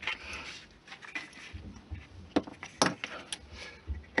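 Hobby knife trimming styrene strip ends off a small plastic model crate: faint scraping, then a few sharp clicks in the second half.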